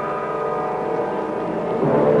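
Dramatic orchestral title music: a held brass chord sounds through most of the stretch, and a new brass chord strikes near the end.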